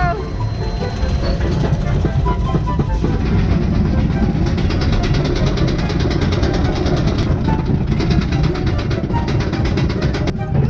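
Roller coaster car climbing the lift hill: a steady rumble with wind on the microphone, joined a few seconds in by a fast, even clicking, the anti-rollback ratchet on the lift.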